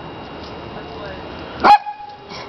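A 20-pound chihuahua giving a single short, sharp bark near the end, after a stretch of low background noise.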